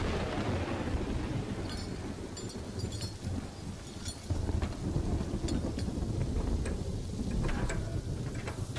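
A deep, steady rumble under an even, rain-like hiss, with scattered light clicks. It opens with a swell of noise that dies away over the first second.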